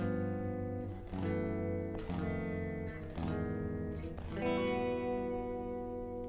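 Electric guitar, tuned a half step down, playing a ii–V–I progression toward G major with the V replaced by the dominant 13♯11 chord a tritone away (a tritone substitution). Chords are struck about once a second and each is left to ring.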